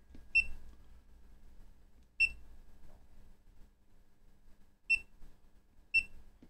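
FNIRSI LC1020E LCR meter beeping as its front-panel buttons are pressed: four short, high-pitched beeps, unevenly spaced, one for each key press.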